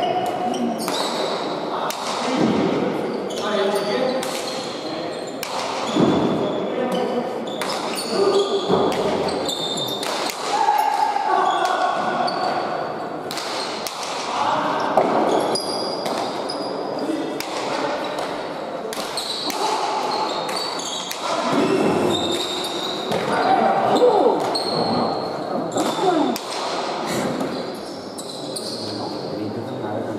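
Hand-pelota ball struck by bare hands and smacking off the court walls and floor in a rally: repeated sharp cracks, irregularly spaced about a second or so apart, echoing in a large hall, with people's voices underneath.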